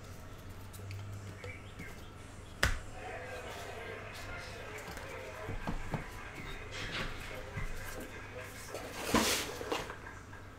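Quiet room with faint voices from a television in the background. There is a sharp click a little under three seconds in, and a short, louder rustling burst near the end.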